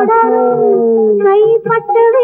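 Old Tamil film song: a voice holds a long note that bends slightly in pitch over a sustained accompaniment tone. About one and a half seconds in, the quick rhythmic melody picks up again.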